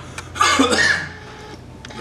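A man coughs, one rough cough lasting under a second, set off by the burn of a super-hot spicy peanut he is chewing.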